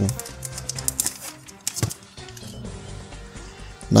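Cellophane wrapper of a trading-card pack crackling and crinkling as it is torn open, a quick run of crackles in the first two seconds that thins out after, over soft background music.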